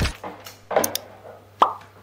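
Music stops at the start, then a couple of light clicks and one short pop that drops quickly in pitch, about one and a half seconds in, over a faint low hum.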